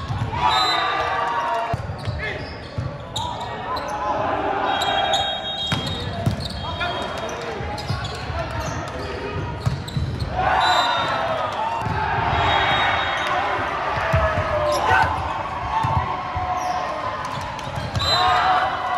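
Indoor volleyball rally in a large, echoing gym: players' and spectators' shouts and calls, with several sharp smacks of the ball being hit.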